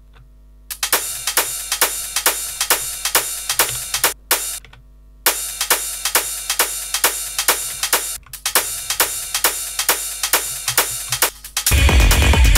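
Techno track playing back from the DAW. A steady run of sharp, evenly spaced percussive hits with little low end stops briefly twice. Near the end the full mix comes in with a heavy bass and kick.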